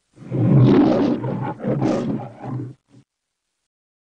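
The Metro-Goldwyn-Mayer logo lion roaring, in three surges over about two and a half seconds, with a brief faint last breath just after.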